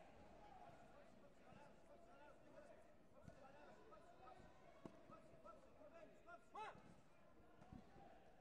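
Faint hall ambience of distant voices and chatter in a large sports hall, with a few soft thumps. One brief, louder voice call stands out about two-thirds of the way through.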